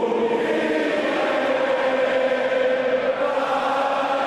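Massed voices chanting in unison, holding long, steady notes.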